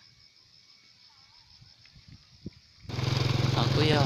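A few faint handling clicks, then from about three seconds in a loud, steady engine-like drone starts abruptly, with a man's voice over it.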